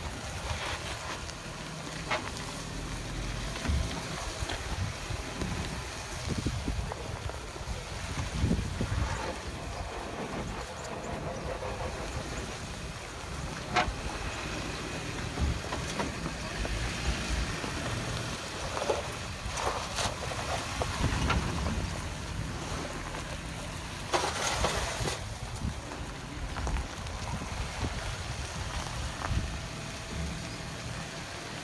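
Jeep Wrangler JK Unlimited Rubicon's engine running as it crawls slowly over uneven dirt ruts, with wind buffeting the microphone. A few sharp knocks come partway through, and a louder rush of noise near the end.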